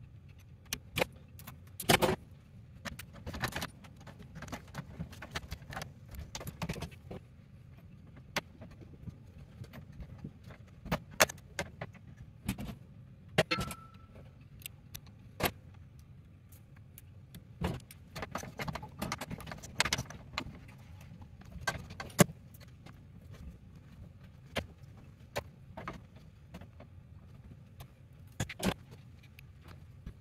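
Irregular clicks, taps and metallic clinks of hands and tools working copper conductors into a steel electrical sub-panel box and its terminal bars, over a low steady hum.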